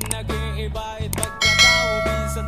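Background music, with a short click and then a bright bell chime about one and a half seconds in: the notification-bell ding of a subscribe-button overlay.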